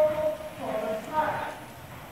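A person's voice speaking for about the first second and a half, over the hoofbeats of a ridden horse moving around the arena.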